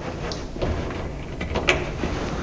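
Demountable recumbent handlebars being unhooked and handled inside the bike's moulded fairing shell: light scrapes and knocks, with a sharp click about one and a half seconds in.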